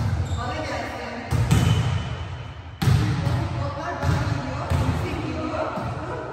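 Volleyballs being hit and smacking onto a hard sports-hall floor: about five sharp impacts spaced a second or so apart, each echoing in the large hall. Indistinct voices run underneath.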